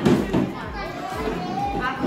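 Young children's voices and chatter mixed with an adult's speaking voice in a classroom.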